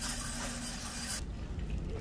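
Background noise of a large store: a steady hiss with a faint hum that cut off suddenly just over a second in, over a low rumble.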